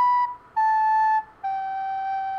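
Soprano recorder playing three descending notes, B, A and G, each a clear steady tone with no squeak, the last held longest.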